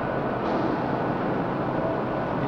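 Steady background noise that stays even throughout, with no distinct events: the room tone of a hall of electronic test consoles.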